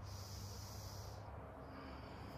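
A person's audible breath out: a hissing exhale lasting about a second, then fading.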